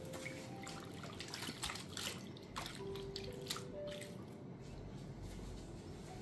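A wet cloth being dipped and wrung out in a bamboo bowl of water, with a run of splashes and drips for about the first three and a half seconds before it dies down. Faint background music plays under it.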